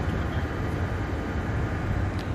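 Steady low rumble and hiss on the flight deck of a Boeing 747-400 freighter taxiing after landing.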